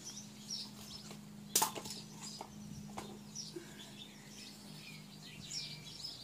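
Small birds chirping faintly in the background, over a steady low hum. A sharp click about one and a half seconds in is the loudest sound, and a lighter click comes about three seconds in.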